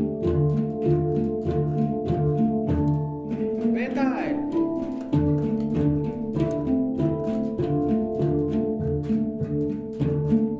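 A group of handpans played together in a steady beat, about four strokes a second, the notes ringing on and changing pitch. A voice cuts in briefly about four seconds in.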